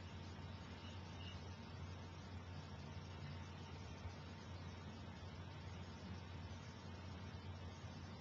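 Faint room tone: a steady low hum under a light hiss, with no distinct events.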